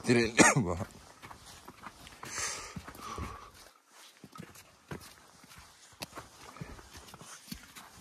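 Footsteps on a snow-covered stone mountain trail, a few soft scattered steps in the second half.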